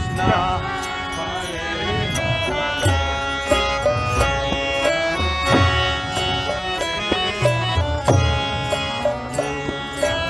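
Live kirtan music: a harmonium holding steady chords over deep mridanga drum strokes, with sharp high ticks keeping a regular beat.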